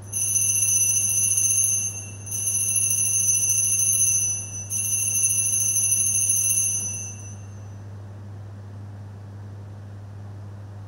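Altar bells rung three times, each ring lasting about two seconds, marking the elevation of the chalice at the consecration.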